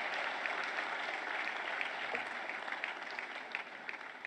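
Audience applauding steadily in a large hall, slowly fading toward the end.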